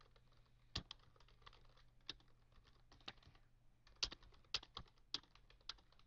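Typing on a computer keyboard: a run of faint, irregular keystrokes with a few louder key presses scattered through.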